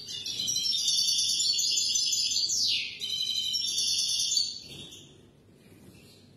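European goldfinch singing a rapid, high run of notes for about four and a half seconds, with a quick falling sweep a little past halfway and a brief break near three seconds, then fading out.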